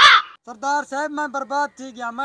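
A person's voice: a short harsh cry with a falling pitch, then, after a brief gap, a run of quick, evenly repeated syllables at a steady high pitch.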